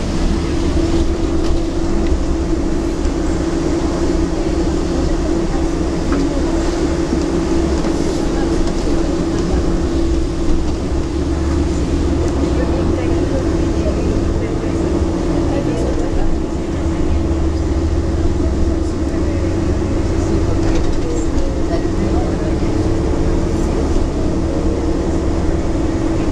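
Inside a long-distance coach travelling on the road: a steady engine and road drone, with a constant hum and a deep rumble that hold unchanged throughout.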